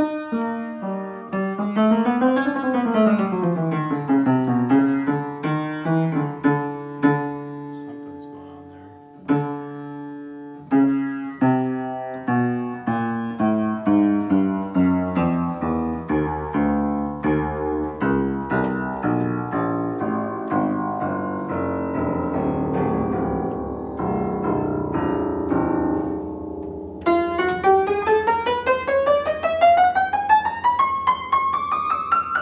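An 1895 Kranich and Bach upright piano, unrestored, with heavily rusted strings and tuning pins, being played: sweeping runs up and down the keyboard and struck chords, ending in a fast rising run. In this state the piano sounds absolutely awful.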